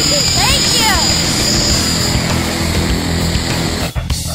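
Propeller aircraft engine running steadily, with a short voice about half a second in.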